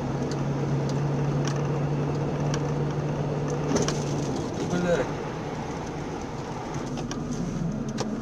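Vehicle driving on a snowy road heard from inside the cab: road and engine noise with a steady low drone that stops about four seconds in, and a few light clicks.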